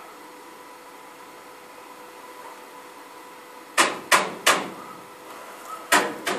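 Three quick, sharp metallic knocks on the steel rebar of the foundation cage, about a third of a second apart, starting past the middle, with another knock right at the end; each rings briefly. Before them only a faint steady hum.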